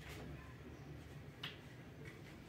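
Quiet handling of dress fabric on a cutting table, with one short, soft click about one and a half seconds in.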